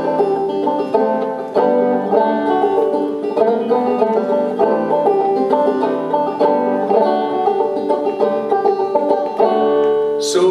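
Banjo played solo, a steady run of quick picked notes forming an instrumental break between sung verses of a folk song.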